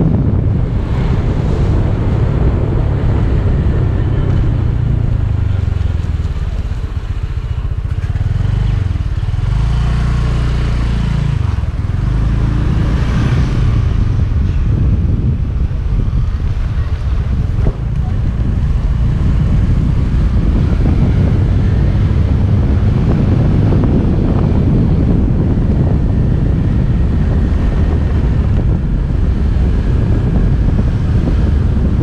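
Wind buffeting the microphone of a camera mounted on a moving motor scooter, with the scooter's small engine running underneath. About eight seconds in the wind eases for a few seconds and the engine note comes through more plainly.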